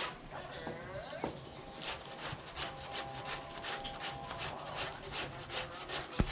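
Wet, soapy laundry being scrubbed by hand against a plastic washboard in a washbasin: rhythmic rubbing strokes, about three a second.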